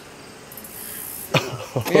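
Quiet outdoor background, then about a second and a half in a person breaks into laughter.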